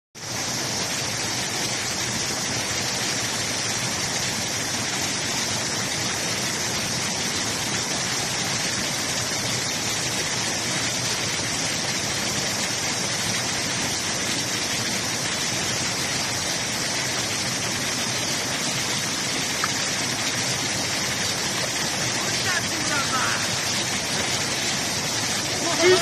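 Steady rush of a shallow mountain stream spilling over a small cascade of rocks and logs, with faint voices a few seconds before the end.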